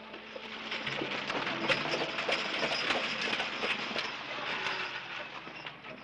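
Horse-drawn stagecoach arriving: hooves clattering and wheels rumbling in a dense, uneven rattle. It grows louder over the first couple of seconds and eases off near the end as the coach pulls up.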